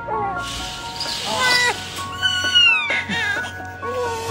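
Newborn baby crying, a run of short wavering high-pitched cries, over soft background music with held notes.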